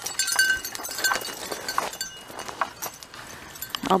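Footsteps crunching irregularly on dry, gravelly desert dirt, with light metallic clinking mixed in.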